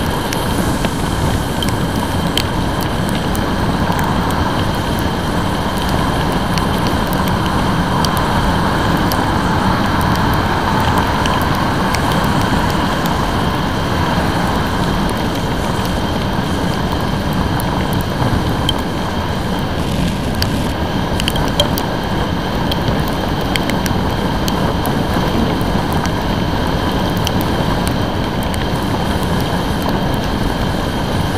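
A motorcycle riding at speed in heavy rain on a wet road: a steady rush of wind, engine and tyre spray, with short ticks scattered through it from raindrops striking the camera.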